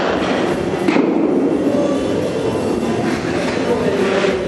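A pitched baseball smacking into a catcher's mitt, one sharp pop about a second in, over the steady, loud din of an indoor training facility.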